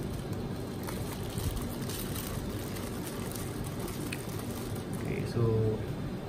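A plastic fish bag rustling and crinkling as hands work it open, with a few faint clicks.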